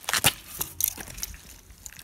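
Handling noise: a scatter of short rustles and clicks as the phone is moved and a hand reaches to the blade, busiest in the first half-second.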